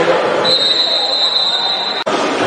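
A steady, high-pitched whistle tone starts about half a second in and holds for about a second and a half, then cuts off abruptly. It sits over gym crowd chatter.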